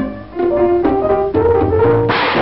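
Orchestral cartoon score: after a brief drop, brass plays about four held notes that climb step by step.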